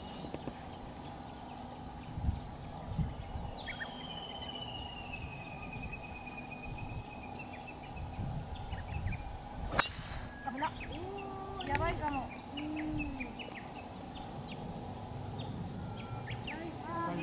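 Golf driver striking a teed ball on a tee shot: one sharp crack about ten seconds in, the loudest sound, followed shortly by brief voices reacting.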